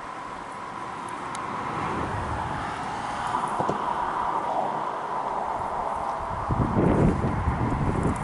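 Highway traffic noise swelling over the first few seconds as a vehicle goes by, then wind buffeting the microphone in gusts from about six and a half seconds in.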